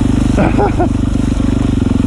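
Dirt bike engine running steadily under way on a trail, held at an even throttle with no revving.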